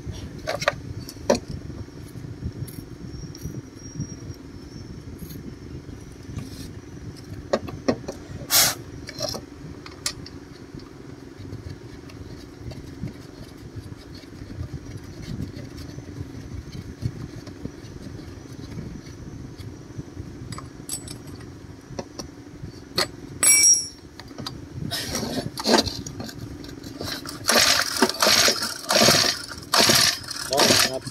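Metal parts of used grass-cutter engines clinking and knocking now and then as they are handled, over a steady low hum. Near the end comes a run of louder rattling clatter.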